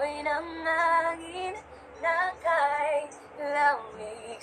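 A woman singing a slow Tagalog ballad line in held notes with a slight vibrato, in three or four short phrases with brief breaths between them.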